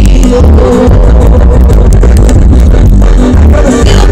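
Loud music with a heavy, steady bass, heard inside a car.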